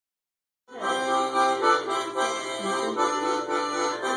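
Harmonica playing a melody, starting about three-quarters of a second in.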